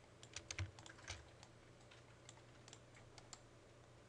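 Faint clicking of a computer keyboard and mouse: a quick run of clicks in the first second, then a few scattered single clicks.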